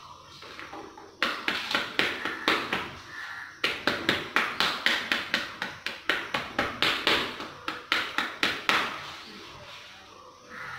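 Small three-pronged hand cultivator raking and breaking up soil in a shallow tray, a quick series of scratching strokes about three a second. The strokes start about a second in, pause briefly, and stop shortly before the end.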